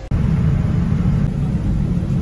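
Airliner cabin noise in flight: a loud, steady low rumble of engines and airflow heard inside the passenger cabin.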